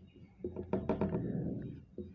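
Felt-tip marker writing on a whiteboard: a few short taps and knocks of the tip on the board in the first half, with the rub of the strokes.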